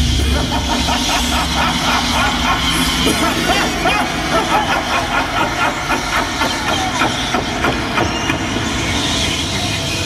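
Haunted-house scene effects: a loud, steady hissing rush from fog jets with a fast, irregular clattering pulse through it.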